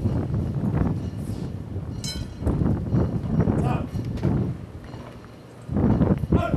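Indistinct voices, with wind buffeting the microphone in irregular low rumbles.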